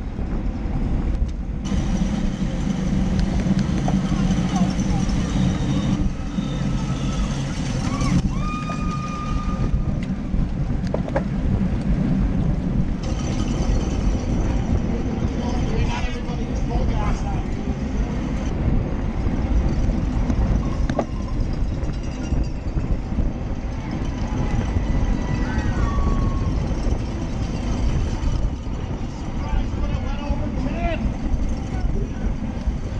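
Wind rushing over a bike-mounted camera's microphone at racing speed, a steady low rumble throughout. Indistinct voices from a PA announcer and spectators come through now and then, with a few brief high tones around a third of the way in and again near the end.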